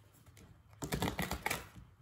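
A deck of tarot cards being shuffled in the hands: a quick run of card clicks and flicks that starts just under a second in and lasts about a second.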